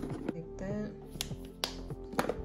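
Music playing, with a few sharp plastic clicks as makeup compacts are handled and set down in a drawer.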